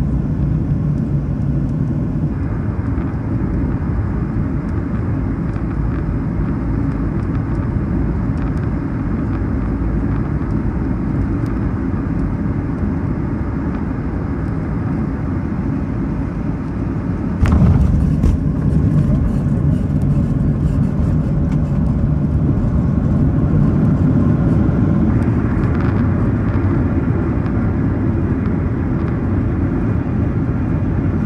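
Jet airliner cabin noise while taxiing: a steady rumble of the idling engines and the wheels rolling on the taxiway. A little past halfway it gets suddenly louder and stays that way.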